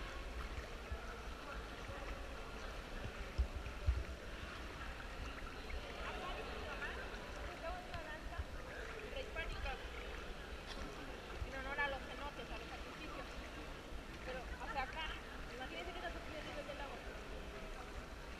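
Indistinct voices of people talking over a low, steady rumble, with two brief thumps about three and a half and four seconds in.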